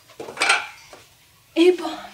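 A small stool with metal legs set down on a tiled floor, clattering and scraping about half a second in.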